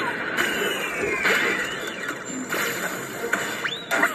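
Cartoon soundtrack playing from a tablet's speaker: sound effects with sliding, squealing tones over a busy bed, a long falling tone starting about half a second in and a quick rising sweep near the end.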